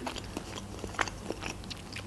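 A person chewing a mouthful of sushi roll, with a few soft, wet mouth clicks.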